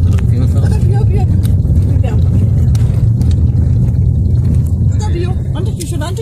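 Car driving on a dirt road, heard from inside the cabin: a loud, steady low rumble of engine and tyres.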